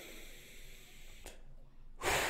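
A lifter's slow, controlled breath, a faint steady hiss of air, taken between reps of a rest-pause set.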